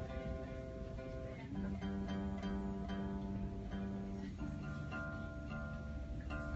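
Acoustic guitar being tuned: single strings plucked and left ringing, with a new note about one and a half seconds in and another a little after four seconds.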